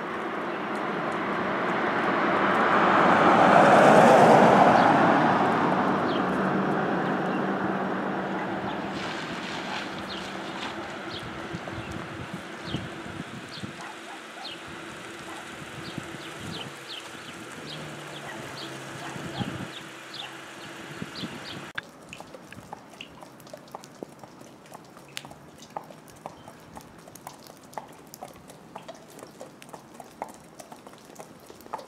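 A vehicle passes on the wet street, its tyre and engine noise swelling to a loud peak about four seconds in and then fading slowly. Horses' hooves clop on the pavement in an irregular walking beat, plainest in the quieter second half.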